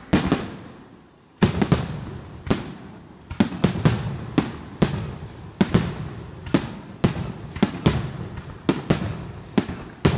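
Aerial fireworks display: a rapid series of sharp bangs from bursting shells, each trailing off. After a short lull about a second in, the bangs come at about two a second.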